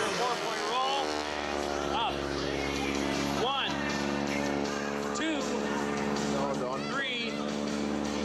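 Biplane's piston engine and propeller droning overhead in a steady tone, its pitch drifting slowly as the plane manoeuvres, with short voice-like sweeps over it.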